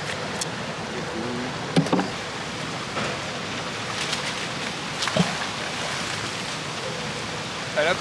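Steady rush of a fast-flowing river, with a few short knocks and clicks scattered through it.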